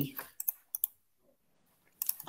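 A few short, sharp clicks of computer keys within the first second.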